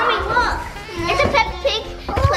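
Children's voices talking and exclaiming over one another, with music playing underneath.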